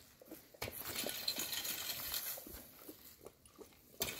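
Wooden rake dragged over dry leaves and dirt: irregular scratching and crackling that starts about half a second in and fades out after about three seconds.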